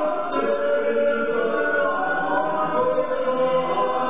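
A choir singing slow, long-held notes in several voices.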